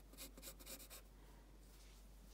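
Faint scratching of a pencil sketching on sketchbook paper: a few short strokes in the first second, then the pencil lifts and only room tone is left.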